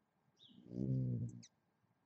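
A single low-pitched vocal sound lasting under a second, held at a steady pitch, with a few faint high bird chirps just before and during it.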